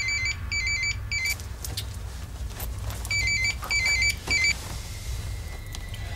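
Mobile phone ringing with an electronic warbling ringtone. It comes in groups of three short bursts, two longer and one shorter, repeating about every three seconds.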